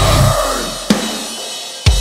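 Metalcore song at a stop in the breakdown: the full band's sound rings out and fades, then single sharp drum hits with cymbal land about a second apart, each left to ring out.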